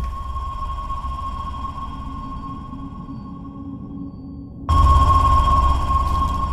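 Tense trailer sound design: a steady, high-pitched electronic tone held over a low rumble, both jumping suddenly louder about three quarters of the way in.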